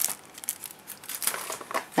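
Clear plastic packaging crinkling and rustling as it is handled, in soft scattered crackles that grow a little louder near the end.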